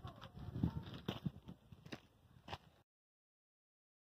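Light footsteps on gravel and a few faint knocks from a wooden board being picked up and handled, then the sound cuts off abruptly to silence near the end.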